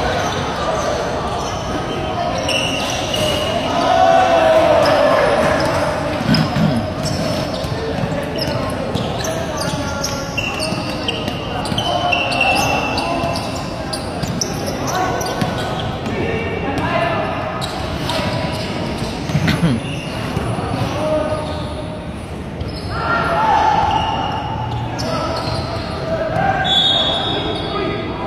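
Basketball game sounds: voices of players and onlookers calling out and talking, mixed with a ball bouncing on the hard court and scattered knocks.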